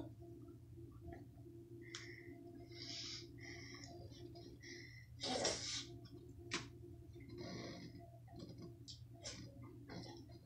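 A man chewing a bite of pizza: faint, soft mouth sounds, with a louder noisy burst about five and a half seconds in and a sharp click a second later, over a steady low room hum.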